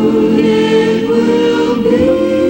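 Christmas music: a choir singing held notes in a chord that moves to a new chord near the end.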